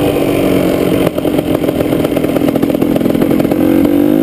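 KTM EXC two-stroke dirt bike engine running on a trail ride, its note easing off slightly, then running uneven with a rapid crackle from about a second in.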